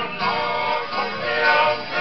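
Group of voices singing together, a Tongan kava-club song, with several voice lines wavering and gliding in pitch at once.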